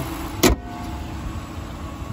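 The hood of a Jeep Grand Cherokee slammed shut: one sharp bang about half a second in, followed by a low steady hum.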